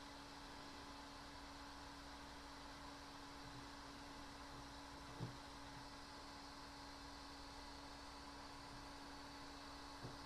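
Near silence: room tone with a faint steady low hum and hiss, and a single faint tap about five seconds in.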